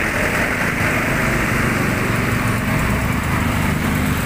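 Slow, dense street traffic passing close: truck and motorcycle engines running right beside the microphone in a loud, steady drone.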